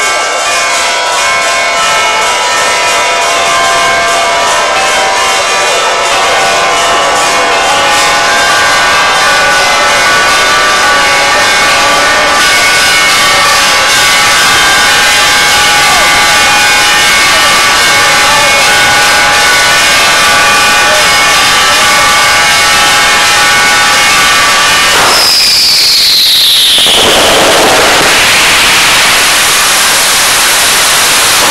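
Church bells ringing in a continuous festive peal over a crowd. About 25 seconds in, a firework whistles down in pitch and a loud rush of noise follows.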